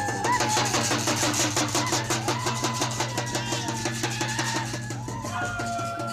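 Live drums playing a fast, steady beat, several strokes a second, with held melody notes over them: the music that accompanies a horse dance.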